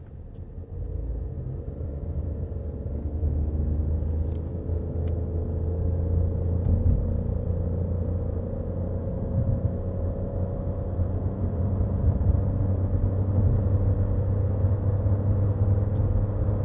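Inside the cabin of a 10th-generation Honda Civic sedan as it accelerates: a steady low rumble of engine and road noise with a faint engine drone, growing louder as speed climbs.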